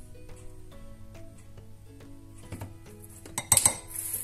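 Soft background music with plucked notes, then a few sharp clinks, about two and a half and three and a half seconds in, from a plastic measuring spoon against its tub and a glass bowl as half a teaspoon of bicarbonate of soda goes into the flour.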